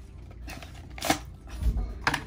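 Cardboard box of an eyeshadow palette being pried and worked open by hand, with rustling, a sharp click about a second in and a dull bump near the end.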